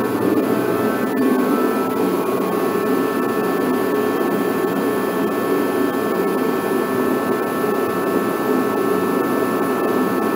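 Craftsman torpedo-style kerosene forced-air heater running: a steady, even roar from its fan and burner, with a faint steady whine above it.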